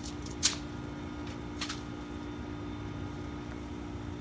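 Small campfire of dry twigs and leaves burning, with a sharp crackle about half a second in and a fainter one at about a second and a half, over a steady low hum.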